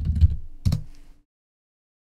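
Computer keyboard typing: a few keystrokes as a terminal command is typed and entered, stopping a little over a second in.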